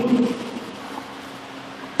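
A man's voice trails off at the start, then a steady faint hum of room noise fills a pause in his speech.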